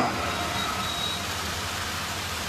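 Steady background noise at a low level, with the tail of a man's amplified voice dying away just at the start and a faint high tone briefly about half a second in.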